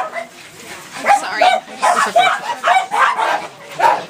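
Small dogs yapping in quick, short, high-pitched barks, about three a second, starting after a brief lull about a second in.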